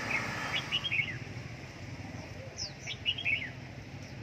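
Caged red-whiskered bulbuls (chào mào) calling in two quick bursts of short, sliding chirps, about a second in and again about three seconds in. The birds are hung near each other to test their fighting spirit, and the calling is their display.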